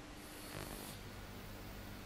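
A homemade electromagnetic thruster rig is switched on from a power strip. There is a short hiss about half a second in, then a faint, steady low electrical hum as the rig runs.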